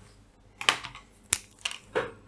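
Four short clicks and taps of pencils on paper over a desk during writing, as one pencil is laid down across the sheet.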